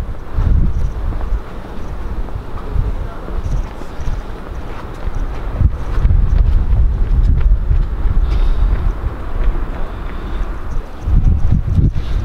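Wind buffeting the camera's microphone outdoors, a loud low rumble that rises and falls in gusts.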